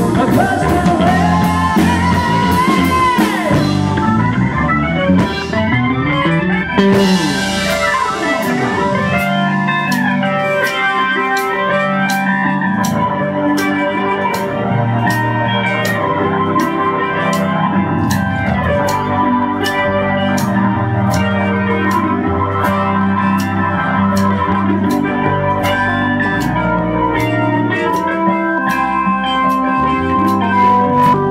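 Live rock band playing an instrumental passage on electric guitar, keyboards, bass and drums. Bending guitar notes stand out early. From about eight seconds in, a steady cymbal beat of about two strikes a second runs under the band.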